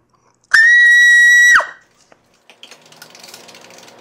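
A loud, steady high-pitched tone held for about a second, then fast computer keyboard typing starting about two and a half seconds in.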